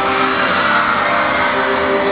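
Live band music recorded from the audience on a small camera, loud and distorted into a dense wash with held notes.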